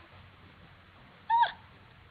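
A woman's single brief, high-pitched vocal squeal about a second in, dipping in pitch at its end, over quiet room tone.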